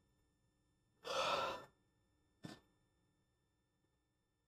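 A man sighs: one long breath out about a second in, followed by a short click.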